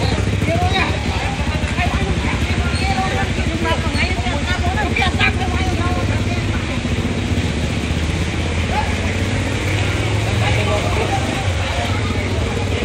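Vehicle engines running steadily in street traffic, a low continuous rumble, with men's voices talking and calling out over it.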